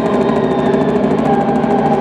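Electronic music played loud through a PA from a live DJ setup: steady, layered synthesizer tones held without a break.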